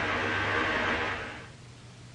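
Steady hiss of an old film soundtrack, with no voice on it, fading out about a second and a half in to a much quieter background.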